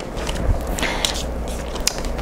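A deck of tarot cards being shuffled by hand, the cards sliding and scraping against each other in a soft, steady rustle.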